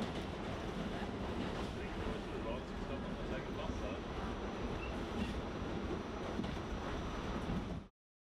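Steady rumble and hiss inside a moving subway car, which cuts off suddenly near the end.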